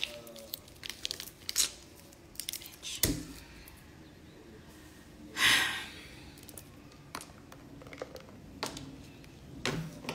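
A plastic water bottle being handled and crinkled, with scattered light clicks and taps; the loudest, a short crinkle, comes about halfway through.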